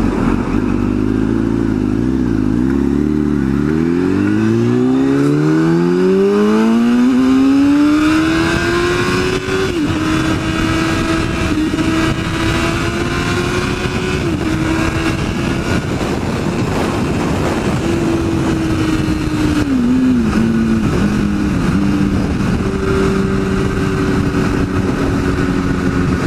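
Kawasaki ZX-10R inline-four sport-bike engine under a hard acceleration: the revs dip over the first few seconds, then climb steadily for about six seconds before settling at a high, steady pitch at highway speed, with wind noise throughout.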